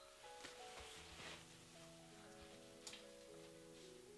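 Quiet background music of held, slowly changing notes, with a few faint rustles early on and one sharp click about three seconds in.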